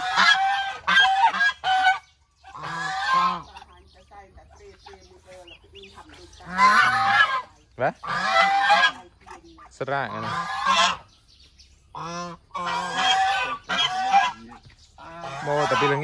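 Domestic geese honking: loud, harsh calls that come in bursts of several honks at a time, with short lulls between the bursts.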